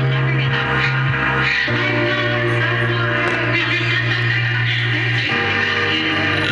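Electronic pop music from an FM radio broadcast played through small desktop computer speakers, with a held synth bass note that changes twice.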